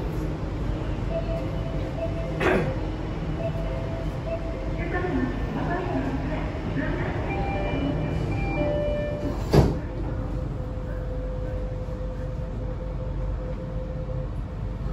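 Steady hum inside a Jakarta MRT train car standing at a station, with a sharp knock a couple of seconds in and a loud thud near the middle as the sliding doors shut.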